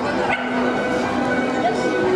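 Small dog barking and yipping over the murmur of a crowded exhibition hall.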